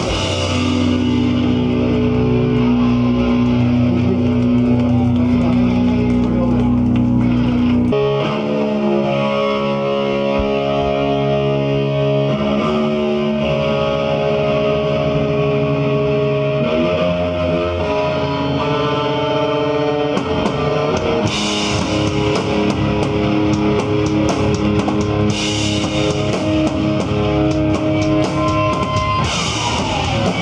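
Live hardcore band playing an instrumental passage: distorted electric guitars and bass guitar hold long sustained chords that change every few seconds. Drum and cymbal hits come in hard about two-thirds of the way through.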